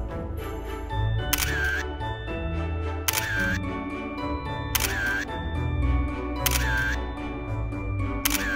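Background music with a camera shutter sound effect clicking four times, about every one and a half to two seconds.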